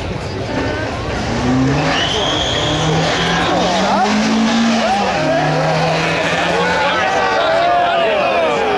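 Two Ford Fiesta drag cars, an old Mk1 XR2 and a new Mk6 ST, their four-cylinder engines revving on the start line and then launching and accelerating away down the strip, the engine notes climbing and dropping as they pull through the gears.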